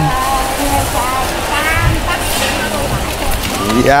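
Several people talking in the background, none of them close, over a steady hiss.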